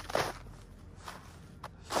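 Footsteps in thin snow over frozen grass, one clearer step just after the start and then softer ones.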